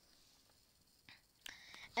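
Near silence for about a second, then a faint breath, a small click and a soft whispery sound from the speaker's mouth.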